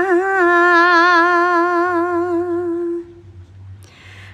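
A solo unaccompanied voice chanting Khmer smot, holding one long sung note with a slight waver that fades out about three seconds in.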